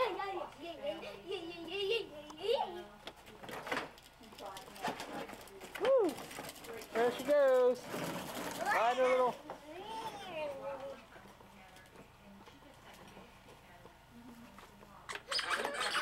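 A young child's voice, babbling and making rising-and-falling squeals and hoots in several separate calls, with a short burst of noise about eight seconds in.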